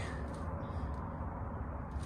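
Steady low background noise outdoors, an even rumble with no distinct events.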